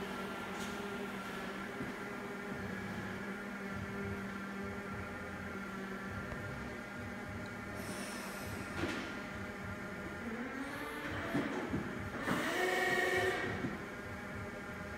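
Hyundai forklift moving a pallet of beehive boxes, its motor giving a steady whine. About ten seconds in, a second whine rises in pitch and grows louder, then holds for a second or so before dropping away.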